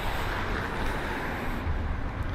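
Steady background rumble of road traffic.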